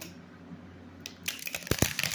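Tarot cards being handled: after a quiet first second, a quick burst of rustling and clicking, with two dull knocks close together near the end.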